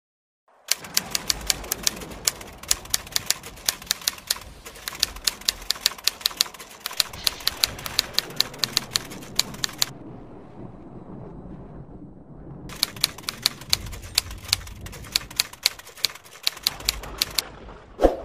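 Typewriter typing sound effect: rapid runs of sharp keystroke clicks, broken by a pause of a couple of seconds in the middle, over a faint steady background noise.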